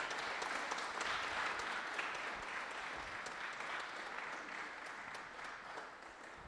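Audience applauding, the clapping gradually dying away.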